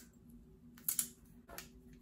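A few small clicks and handling knocks, the sharpest about a second in, from hands handling a roll of duct tape and a Converse shoe with coins taped to its sole.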